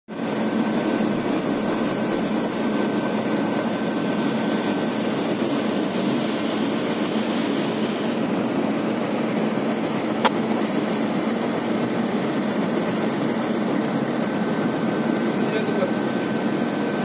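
Steady low machinery drone of marine engines, with a faint steady high-pitched whine over it. One sharp click comes about ten seconds in.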